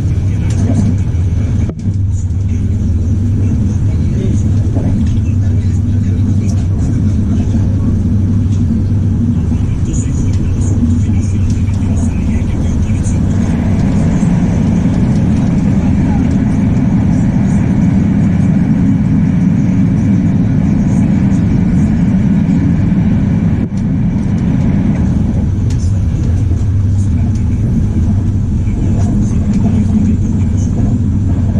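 Steady low rumble of a moving train's wheels and running gear, heard from inside an Intercity UIC-Z passenger coach.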